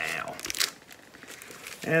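Plastic record sleeve crinkling as a vinyl LP is handled and swapped for the next one, a few faint crackles through the middle.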